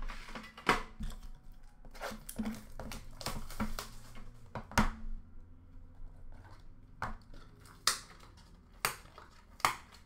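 Hands handling a metal trading-card tin and the box inside it: a string of sharp clicks, taps and knocks, the loudest about five seconds in, with a quieter spell just after and scattered taps near the end.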